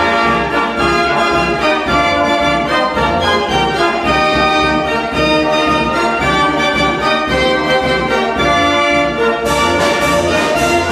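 Verbeeck concert organ, a mechanical dance organ, playing a tune: full, brassy pipe ranks carrying the melody over a steady pulsing bass accompaniment.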